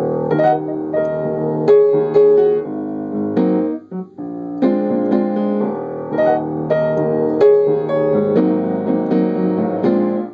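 Piano introduction to a song: chords struck and left to ring, with a short break about four seconds in.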